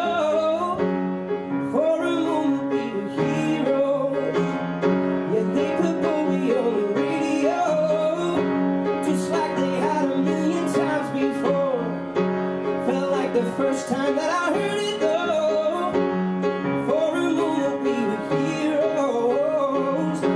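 Upright piano played live, with a man singing a held, wavering melody over the chords.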